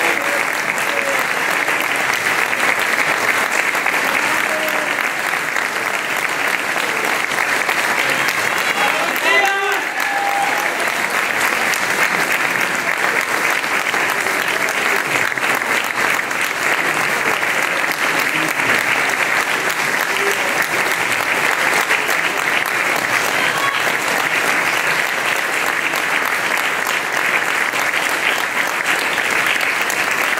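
Audience applause: sustained, even clapping from a hall full of people at the end of a choir's song. A brief voice call rises over the clapping about nine seconds in.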